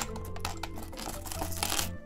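Loose plastic LEGO pieces clicking and clattering against each other and the tabletop as hands sort through a pile, in many quick irregular clicks that grow busier near the end. Background music with a steady bass runs underneath.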